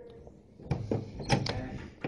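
A door being opened: a quick cluster of clicks and knocks starting under a second in, with the loudest strikes about a second and a half in.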